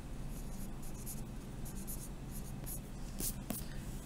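Pen writing on lined notebook paper: a run of short strokes as a line of algebra is written out.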